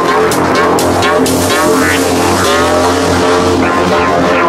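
Melodic techno in a breakdown: the kick drum has dropped out, leaving sustained synth chords under wavering, sweeping synth lines.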